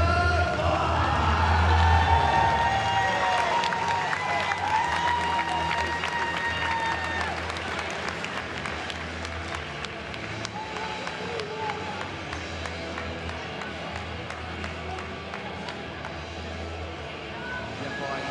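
Arena music with a heavy bass and a held sung line, fading down over the first half into crowd murmur with scattered clapping.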